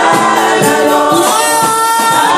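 A congregation singing a gospel praise song together, several voices holding long notes at once.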